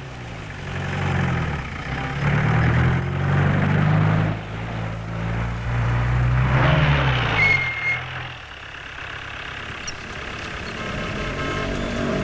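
Auto-rickshaw engine running on the move, its pitch rising and falling with the throttle and easing off about eight seconds in. There is a brief high-pitched squeal about two-thirds of the way through.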